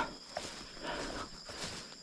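Faint night-time outdoor ambience: a steady high-pitched insect chirr, likely crickets, with a few soft rustles, after a brief breathy noise at the very start.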